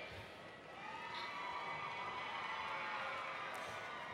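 Faint, steady background of a large ceremony hall between announcements, with a few faint sustained tones under a low hush and no clear applause or speech.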